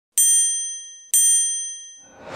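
Two bright bell-like dings about a second apart, each ringing out and fading: the sound effect of an animated TV channel logo intro.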